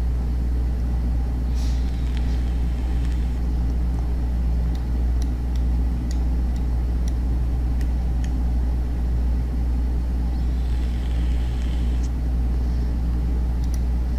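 Steady low hum of background machine or electrical noise, with a few faint scattered clicks and two brief soft hisses.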